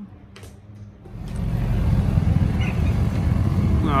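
A quiet low hum. About a second in, a loud steady rush of wind and vehicle noise starts as an open three-wheeled GoCar is driven down a city street.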